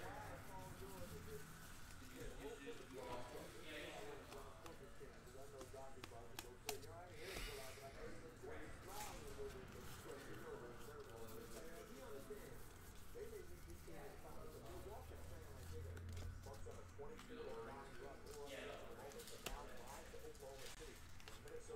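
Soft rustling and sharp little clicks of baseball cards being flipped through by hand, a few snaps standing out now and then, under faint, indistinct background speech.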